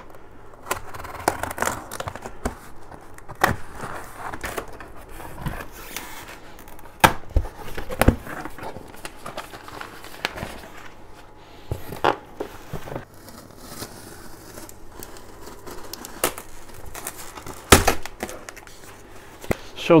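A cardboard parcel being unpacked: a box cutter slitting the packing tape, cardboard flaps being pulled open, sheets of paper rustling and packing paper crinkling, with a series of sharp knocks and thuds as the box and its lid are handled.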